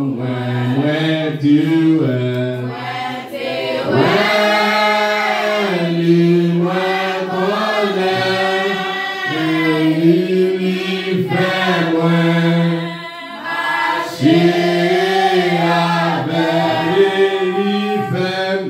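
Church congregation singing a hymn together, unaccompanied, with notes held long. A man's voice leading through a microphone stands out strongly.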